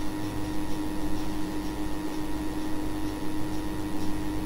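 Steady background hum with hiss, with a few fixed tones and no other event.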